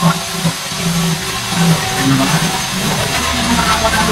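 Angle grinder with a sanding disc running against the stainless steel edge of a frame, a steady whirring grind.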